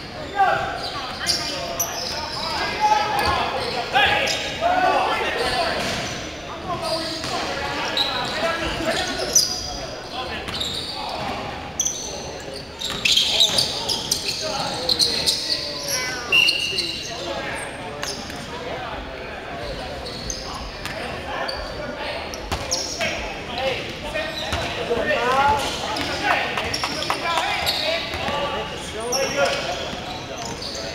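Basketball game in a large gym: a ball bouncing repeatedly on the hardwood court, with players' voices calling out, all echoing in the hall.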